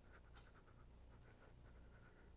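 Near silence: a steady low hum in the recording, with faint scattered ticks.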